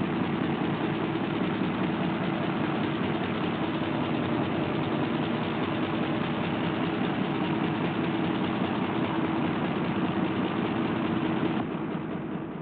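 Steady mechanical hum with a hissing rush, the cartoon's sound effect for the refrigeration machinery keeping the frozen monster's ice block cold; it eases off near the end.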